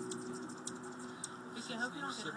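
Hummingbirds around a feeder: a steady wing hum that fades within the first half second, then a few sharp high ticks about half a second apart.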